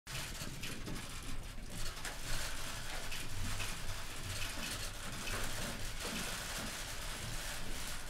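Many press camera shutters clicking in quick, irregular flurries over a steady low room hum.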